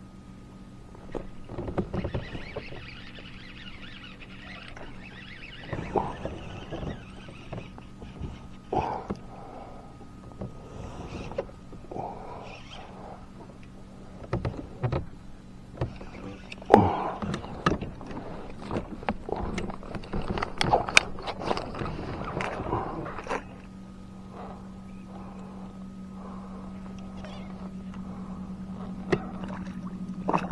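A hooked bass splashing at the surface as it is played alongside a kayak and netted, with scattered knocks of gear on the hull. The loudest splashes come a little past halfway through, and a steady low hum sets in during the last third.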